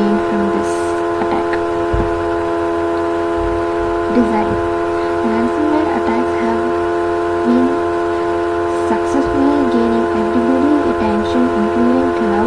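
A loud, steady hum made of several fixed tones, with a person's voice speaking over it.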